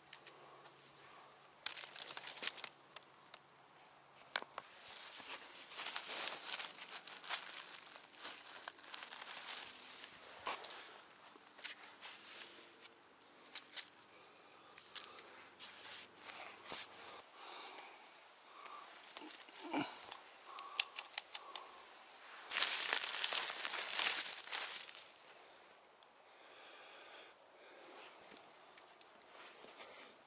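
Footsteps through dry leaves and twigs on a forest floor and a wicker basket of mushrooms being handled: irregular rustling and crackling with scattered sharp snaps, loudest for a couple of seconds about three-quarters of the way through.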